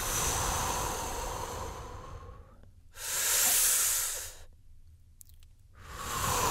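A man breathing deeply and audibly into the microphone. A long breath lasts about two and a half seconds, then after a short pause a louder breath of about a second and a half follows; another breath begins at the very end.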